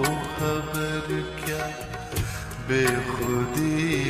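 Lofi remix of an old Hindi film song: held melodic notes over soft percussion hits.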